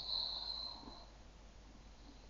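A faint breath close to the microphone in the first second, then near silence.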